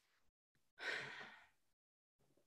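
A person's single short sigh, about a second in, lasting about half a second.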